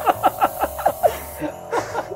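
Chuckling laughter in quick repeated breaths over the steady high hiss of an airbrush spraying paint, which stops about one and a half seconds in. Background music runs underneath.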